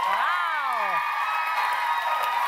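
Studio audience cheering and clapping, with a high whoop that falls in pitch in the first second and held cries of "woo" over the clapping.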